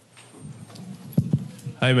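Two short knocks in quick succession about a second in, over quiet lecture-hall room tone, then a man begins to speak near the end.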